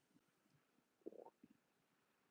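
Near silence: quiet room tone, broken about a second in by one faint, brief low sound.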